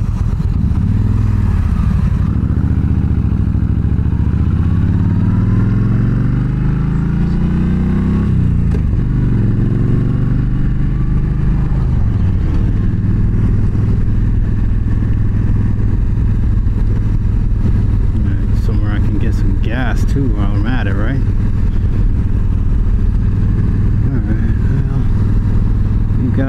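Yamaha V Star 1300 V-twin pulling away from a stop and accelerating up through the gears, its pitch climbing and dropping back at the shifts over the first dozen seconds. It then runs steadily at cruising speed.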